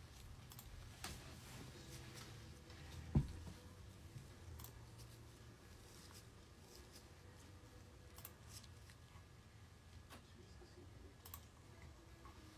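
Quiet room with faint, scattered small clicks and light handling noises, and one soft low thump about three seconds in.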